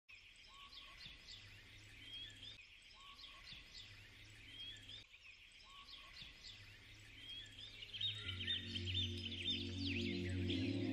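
Quiet ambience of many small birds chirping and twittering, with one short whistled call repeating about every two and a half seconds. About eight seconds in, soft music with sustained low notes comes in under the birdsong and grows louder.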